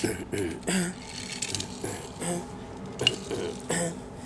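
A young child making short wordless vocal noises while playing, four or five brief bursts spread through, with a sharp click about three seconds in.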